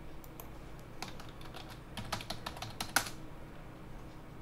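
Computer keyboard: a quick run of about fifteen keystrokes over two seconds, typing a password at a sign-in prompt, ending with one louder keystroke.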